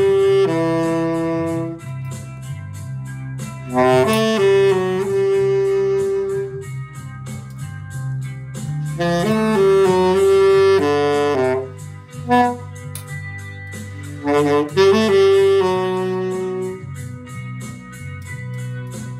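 A freshly restored C-melody saxophone, a Martin Handcraft stencil sold as the Great Gretsch American, playing a tune in short phrases with pauses between them. It plays over a backing track with a steady bass line and light, even percussion ticks.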